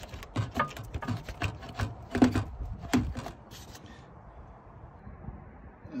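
Rubber air intake duct being bent, wiggled and pulled free of a Fiat Idea's engine bay: a run of irregular clicks, knocks and rubbing, with two louder knocks around two and three seconds in, then quieter from about four seconds in.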